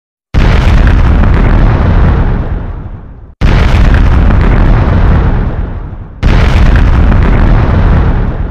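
Three explosion sound effects in a row, about three seconds apart. Each one hits suddenly with a deep rumble and then fades away.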